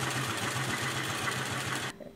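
Industrial post-bed sewing machine running steadily while stitching a leather sneaker upper: an even, pulsing mechanical hum that cuts off abruptly near the end.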